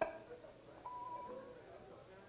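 Stray, quiet instrument notes: a sharp plucked string note at the start that rings away, then a short held higher note about a second in.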